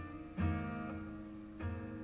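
Acoustic guitar strummed in a live performance, with two strong chord strokes about a second apart and the chords ringing on between them.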